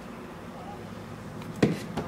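A single sharp knock about three-quarters of the way in, over a low steady hum: something being handled and knocked against a shelf of an open refrigerator.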